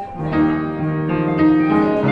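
Slow jazz ballad on upright piano and electric guitar: a held guitar note dies away and sustained piano chords come in a moment after the start.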